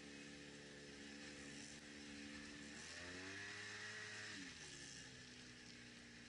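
ATV engine, heard faintly, running steadily. About three seconds in it revs up, holds for a second and a half, then drops back.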